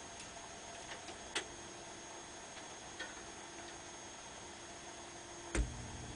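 Record-changer mechanism of a 1956 Wurlitzer 2000 jukebox cycling to bring a 45 into playing position: faint scattered clicks and ticks over a faint steady whir. Near the end a single loud clunk as the record is set in place, after which a low steady hum sets in.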